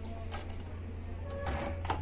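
Syringe needle being cut off in a needle cutter: a few sharp clicks, the densest cluster about a second and a half in, over a steady low hum.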